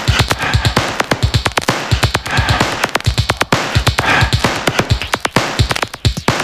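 Electronic dance music with a steady, driving kick-drum beat.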